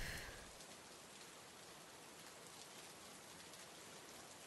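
Faint, steady rain, heard as an even hiss, with a brief soft sound at the very start that fades within half a second.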